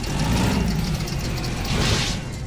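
A heavy truck engine running, with a rising whoosh near the end.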